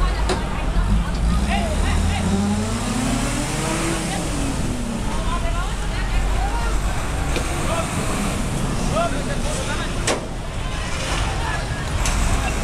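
Fire truck engine revving, its pitch rising and then falling over a few seconds as the truck drives past, with a crowd talking and calling out throughout. A single sharp knock near the end.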